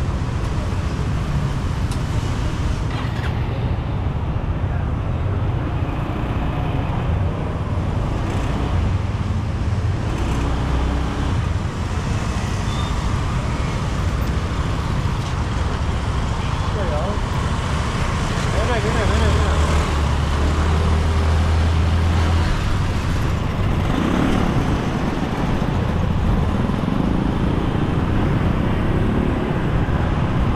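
Motor scooter being ridden through dense street traffic: its small engine running under throttle amid the steady noise of surrounding scooters and cars.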